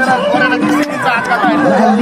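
Several men's voices talking and calling out over music with level held notes, repeated in half-second stretches.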